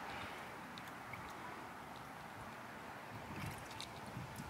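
Faint, steady outdoor background noise with a few soft handling sounds as water balloons are picked out of a bag.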